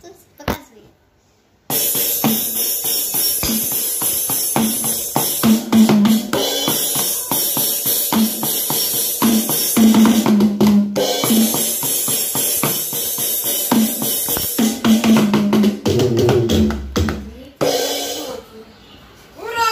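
Roll-up electronic drum pad struck with wooden drumsticks, its drum-kit sounds coming through a loudspeaker. The playing starts about two seconds in: quick, uneven drum hits with cymbals. It stops shortly before the end.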